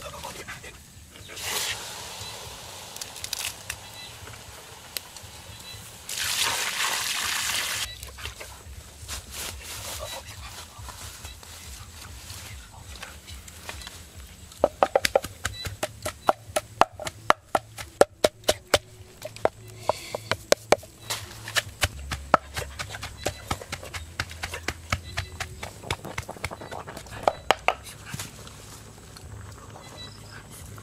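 Pork frying in a black wok over a wood fire: a loud hiss lasting about two seconds, then, from about halfway on, a run of sharp, irregular pops and crackles.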